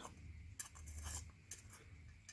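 Faint handling noise: a few light clicks and scrapes as a steel digital caliper is worked and its jaws are slid against the filter, over a low hum.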